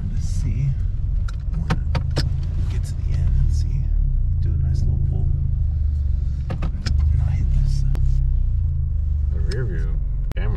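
Steady low rumble of a 2019 Toyota Corolla hatchback heard from inside the cabin, road and engine noise while it is driven, with a few scattered sharp clicks.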